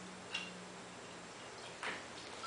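Glass jar with a metal screw lid being shaken and handled: two light clinks, one about a third of a second in and one near the end, about a second and a half apart.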